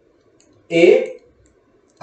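A man's voice saying a single spelled-out letter about a second in, with faint clicks and a low hum in the quiet before and after it.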